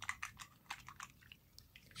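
Close-up, irregular wet clicks and crackles, several a second, from fingers and artificial nails being worked in warm soapy water to loosen the nails.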